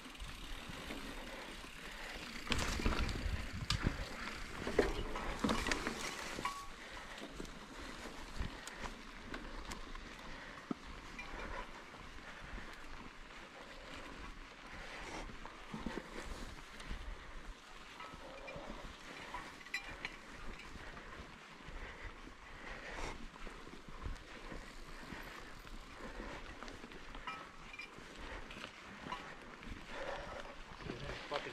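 Mountain bike ridden over a dirt singletrack: tyre noise on the dirt with scattered clicks and rattles from the bike, louder for a few seconds near the start.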